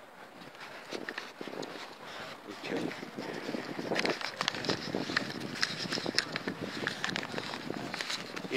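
Rustling and crackling of a leafy branch and camera handling close to the microphone: a run of short clicks that grows busier from about four seconds in.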